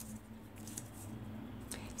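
Quiet room tone with a low steady hum, and faint handling of a small cardstock butterfly being pressed in place on the bookmark.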